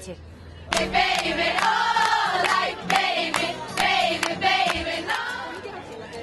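A group of young fans singing together, with hand claps keeping a steady beat about twice a second; the singing starts about a second in and fades out near the end.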